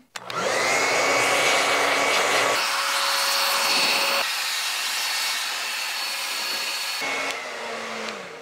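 Hand-held hair dryer switched on and blowing, its motor whine rising as it spins up. The sound changes about two and a half seconds in and winds down near the end.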